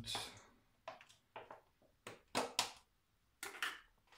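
A series of short clinks and knocks of kitchen utensils and containers being handled, about eight separate hits spread unevenly through the stretch.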